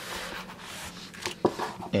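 A tablet sliding into a neoprene sleeve pocket: a soft rubbing and rustling of the device against the fabric, with one sharp tap about one and a half seconds in.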